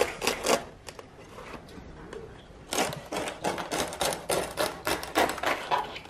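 Large knife cutting into the crisp, lacquered skin of a whole roast pig, which breaks with rapid crackling clicks. A few clicks come first, then the crackling turns dense from about halfway through: the skin is roasted crisp enough to crackle at once under the blade.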